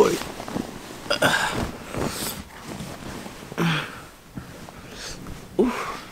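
A man's short, scattered breaths and grunts in three brief bursts, then an 'oeh' near the end, reacting to a plastic bottle filled with hot water that is burning him.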